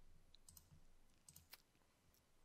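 Near silence with a few faint, brief computer mouse clicks, one about half a second in and two close together about a second and a half in.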